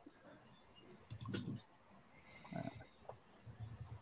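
A lull with a few faint clicks and brief soft vocal sounds, about a second in, halfway through and near the end.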